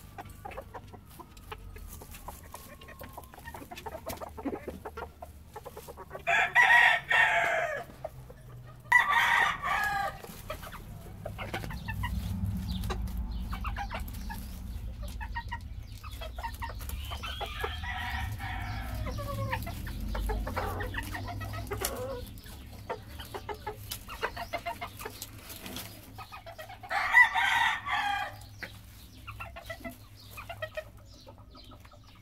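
Kikiriki bantam roosters crowing: three loud crows about six, nine and twenty-seven seconds in, and a fainter crow in the middle. Hens cluck in between.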